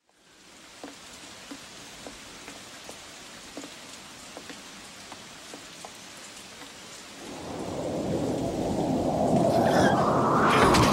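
Steady rain falling, with faint knocks about twice a second. From about seven seconds in, a deep rumble swells and grows loud.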